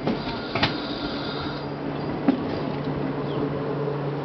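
Travys electric regional train rolling slowly alongside the platform, with a steady low traction hum and a few sharp clunks from the wheels and running gear in the first couple of seconds.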